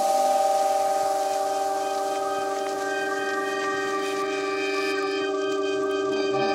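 Electronic music breakdown: a held synthesizer chord of several steady tones, with the bass dropped out.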